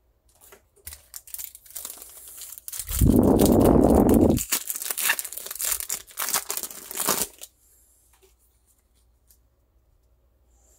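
Foil wrapper of a Pokémon trading-card booster pack crinkling as it is torn open by hand, loudest from about three to four and a half seconds in. It stops about seven and a half seconds in.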